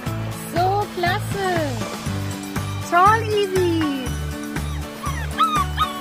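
Background music with a steady beat. Over it, a dog yips and whines in three short bouts of rising-and-falling calls, the middle one ending in a long falling whine.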